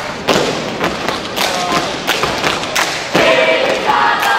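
A scout troop doing a yel-yel routine, feet stamping together in a series of sharp thuds on a hard hall floor. Just past three seconds in, the group breaks into a loud shouted chant.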